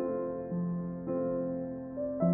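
Soft background music on a piano-like keyboard: a few notes or chords struck in turn, each left to ring and fade before the next.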